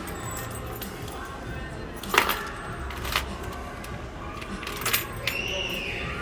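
Three short, sharp clicks, about two, three and five seconds in, the first the loudest, over a background of indistinct voices and music.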